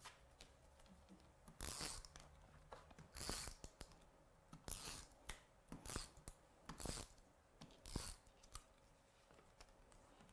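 Tape runner (tape pen) laying adhesive on paper, heard as about six short, faint strokes roughly a second apart, with light paper handling between them.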